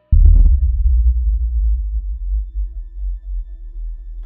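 A cinematic sub-bass boom hits suddenly just after the start, with a short crack on top, then decays slowly. A faint sustained pulsing tone comes in under it from about a second in.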